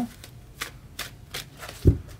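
Rider-Waite tarot cards being handled and dealt from the deck: a few light card clicks and flicks, then a soft low thump near the end as a card or the deck meets the padded mat.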